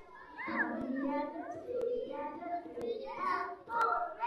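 Voices with rising and falling pitch, with a faint sharp click about once a second.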